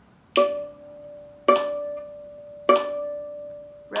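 Viola played pizzicato: three plucks of the same note, D with the third finger on the A string, evenly spaced a little over a second apart, each ringing on and fading before the next.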